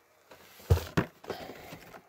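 Cardboard box and packaging being handled as the box is opened and its contents lifted out: two sharp knocks about a third of a second apart near the middle, then rustling.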